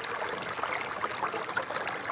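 A bubbling stream: water running and burbling steadily.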